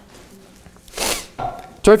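A single brief papery rustle of a thin Bible page being turned, about a second in.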